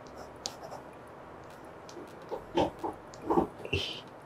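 Ballpoint pen scratching faintly on a paper notepad, then a few short, stifled chuckles in the second half.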